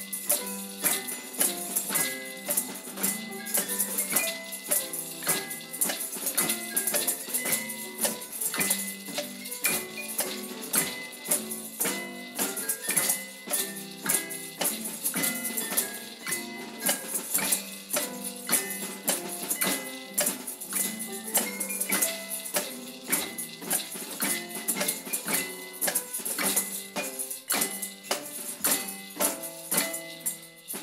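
Rhythm band of homemade and hand percussion, with tambourines, bells and a bass drum, playing a march with a steady beat.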